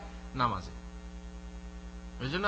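Steady electrical mains hum picked up by the microphone's sound system, with one brief syllable from a man's voice about half a second in.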